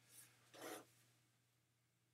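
Near silence: a low steady hum, with two faint, brief rubbing noises within the first second.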